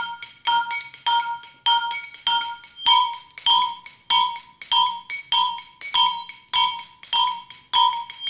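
Percussion quartet playing a fast repeating pattern of short, ringing, pitched strikes on tuned percussion, about three strikes a second. About three seconds in, the pitches of the pattern shift.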